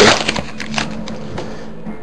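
Foil wrapper of a trading-card pack being torn open and crinkled by hand: a run of irregular crackles and small snaps that fade near the end.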